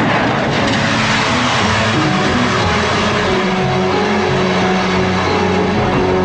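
Drama soundtrack: music with steady held low tones under a loud, even rushing noise, like a wind or whoosh effect.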